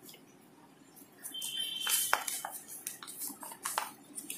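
Paper sheets on a clipboard being handled and flipped over: rustling with a string of light clicks and knocks that starts about a second in.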